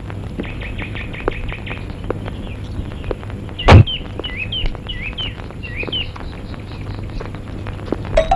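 Birds chirping in repeated short, high calls, at first in a quick run and later as separate hooked chirps. One loud thud comes about three and a half seconds in.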